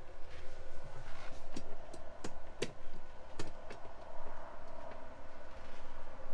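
A few sharp, light clicks, about five spread over two seconds, over a faint steady hum.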